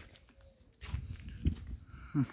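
Footsteps on dry dirt ground: a few soft, low thuds with light scuffs.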